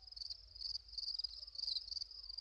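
Crickets chirping in a steady, rapid, high-pitched pulsing trill: a night-time ambience.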